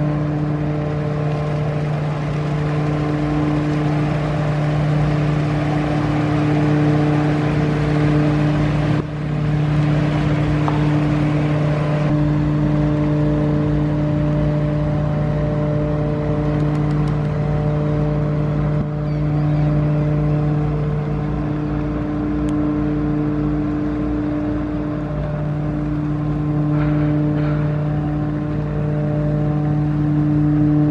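Diesel engines of an offshore crew transfer vessel running steadily as it passes close by: a continuous hum with several steady pitched tones over a rushing noise, broken by a few abrupt cuts.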